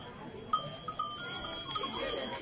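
A bell on a sheep's collar clanking several times from about half a second in as the sheep moves its head, each strike ringing on briefly.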